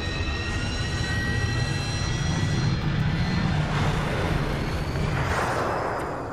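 Animated starship engine sound effect: a steady whooshing roar with a faint high whine sliding slowly down in pitch, easing off near the end.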